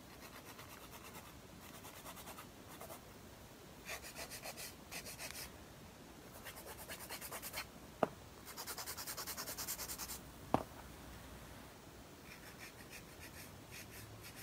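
Hand nail file rasping back and forth across an artificial nail in bursts of quick, evenly spaced strokes, cleaning up the nail before the artwork. Two sharp clicks sound in the latter half.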